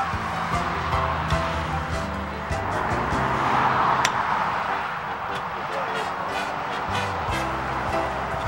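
Background music with sustained, steady notes that change every few seconds.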